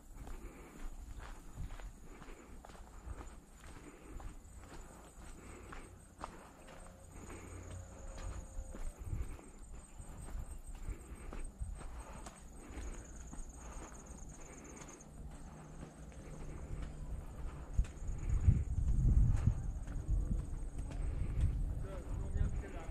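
Footsteps on a paved concrete path, about two steps a second, with wind rumbling on the camera microphone that grows much louder over the last few seconds.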